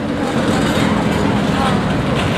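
Aston Martin DB9's V12 engine running at low revs as the car rolls slowly past, a steady low engine note.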